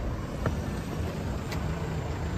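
Low steady rumble with two faint clicks, about half a second and a second and a half in, as the Jeep Compass's driver's door is opened.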